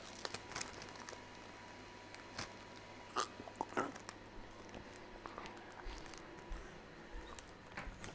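A person chewing a mouthful of raw wild rocket (arugula) leaves, with faint, irregular crunches and mouth clicks.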